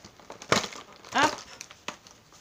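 Cardboard advent calendar door being pushed and torn open, with crinkling and two sharp cracks of card, one about half a second in and one near the end.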